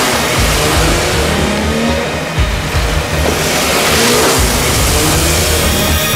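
A car engine revving as the car speeds along, mixed with music.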